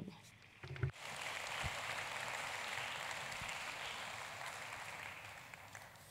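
Theatre audience applauding: the clapping comes in about a second in and slowly dies away.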